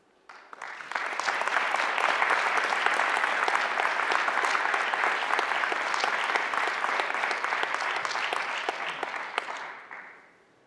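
Audience applauding. The clapping starts just after the opening, swells within about a second, holds steady and dies away near the end.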